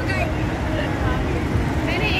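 Busy road traffic with a steady low engine rumble, and indistinct voices talking over it.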